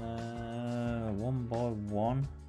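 A loud, long held pitched note over steady background music, wavering down and back up in pitch two or three times in its second half.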